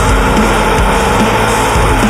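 Heavily distorted guitars, bass and drums of a progressive deathcore / djent metal song playing a dense, loud riff, with no clear vocals in this stretch.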